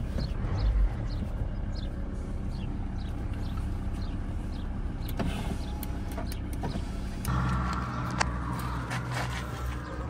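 Volkswagen van on the move, heard from inside the cabin: the engine runs steadily under road noise, with a few sharp knocks and rattles. About seven seconds in the sound steps up and a steady hum grows louder.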